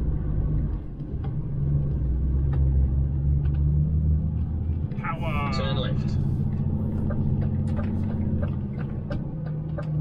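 DAF XF 530 truck's six-cylinder diesel, heard from inside the cab, pulling hard in a low gear in power mode on a climb; its low drone changes pitch about halfway through. A brief rising-and-falling pitched sound comes near the middle, over scattered light clicks.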